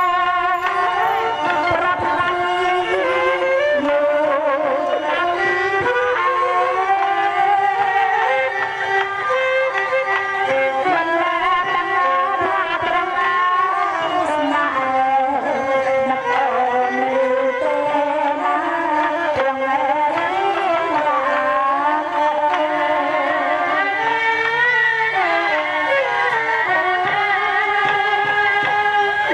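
A woman singing a Khmer lakhon basak melody into a microphone with a wavering, ornamented voice, over continuous instrumental accompaniment.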